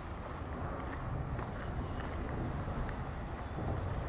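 Steady low outdoor rumble with a few light, irregular footstep-like clicks as someone walks with the phone.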